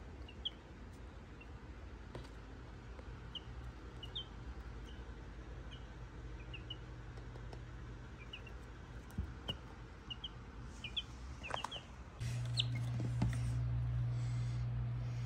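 Baby chicks peeping softly: short, high cheeps that fall in pitch, scattered through, with a few light taps. A steady low hum runs underneath and gets louder near the end.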